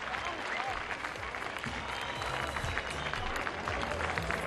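An audience applauding, with many hands clapping steadily.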